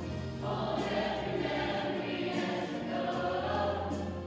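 Middle school mixed chorus singing together in held notes, the sound swelling fuller and louder about half a second in.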